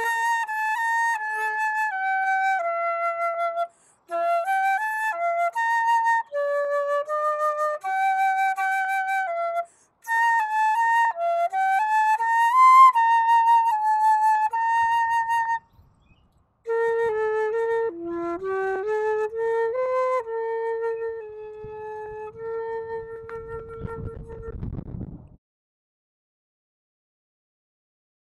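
Solo concert flute playing an unaccompanied melody in phrases, with short breath pauses between them. The last phrase drops into the lower register and ends on a long held note that fades away.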